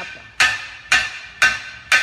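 Hammer blows on metal in a workshop, struck evenly about twice a second, four in a row, each one ringing briefly.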